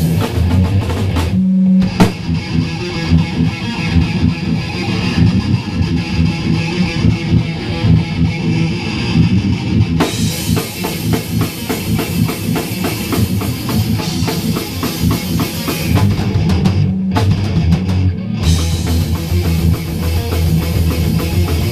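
Thrash metal band playing live: distorted electric guitars, bass guitar and drum kit, with no singing. The riff stops short about one and a half seconds in and twice more near the end, each time crashing back in.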